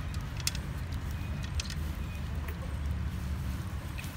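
Cats eating kibble from a metal tray: a few sharp crunches and clicks, the loudest about half a second in, over a steady low rumble.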